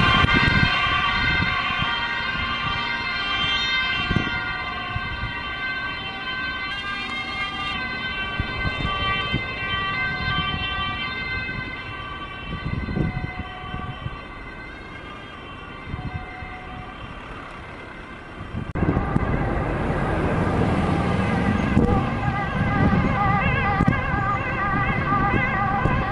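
Ambulance siren sounding as the ambulance drives away, gradually getting quieter. A little before the end a louder siren starts, its pitch wavering quickly up and down.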